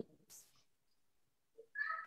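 Quiet video-call line with a short, high-pitched vocal sound about half a second long near the end.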